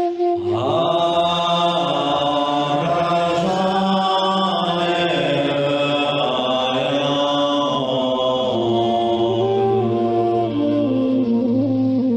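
A man chanting a mantra in long held tones that step between a few pitches, with a short breath just after the start.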